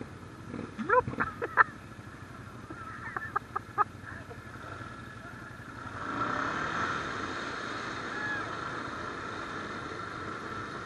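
Can-Am ATV engine running steadily, with a few short shouts early on; from about six seconds a louder churning of water sets in as the ATV wades into the mud hole.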